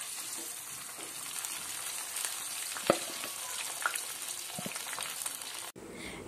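Cauliflower florets deep-frying in hot oil, a steady sizzle with a few light clicks around the middle. The sound cuts off just before the end.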